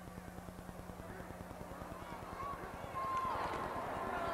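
Background of an old TV broadcast recording: a steady low electrical hum and buzz under faint, distant voices, which get a little louder about three seconds in.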